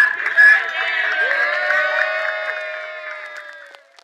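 A group of waitstaff singing together, with a few claps at the start, finishing on one long held note that fades away near the end.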